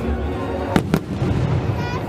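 Fireworks bursting overhead: two sharp bangs about a fifth of a second apart, a little under a second in, over music playing.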